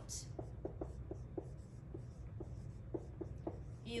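Dry-erase marker writing on a whiteboard: a quick series of short squeaks and scratchy strokes as letters are written.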